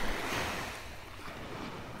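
Small waves washing up the beach: a swell of hiss in the first half second that fades away.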